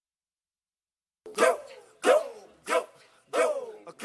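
A dog barking, four barks starting just over a second in, spaced about two-thirds of a second apart, each bark sliding down in pitch.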